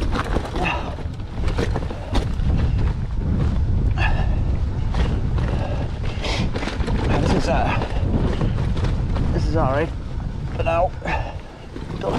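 Mountain bike rattling and knocking over a loose, stony trail, under a steady low rumble of wind and vibration on the handlebar-mounted microphone. Brief bits of the rider's voice come in near the start and about ten seconds in.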